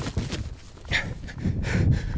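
A freshly shot wild turkey flopping, its wings beating and thrashing against the grass in irregular thumps and rustles as it is grabbed and lifted.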